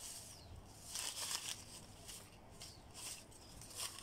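Torn scrap paper rustling in short, irregular bursts as hands push the pieces into plastic buckets.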